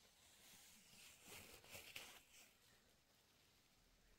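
Near silence, with a faint short rustle of noise between about one and two seconds in.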